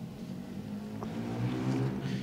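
Room tone from an open microphone: a low steady hum with a faint click about a second in.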